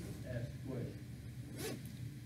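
A man's voice speaking indistinctly, with a short hiss about one and a half seconds in.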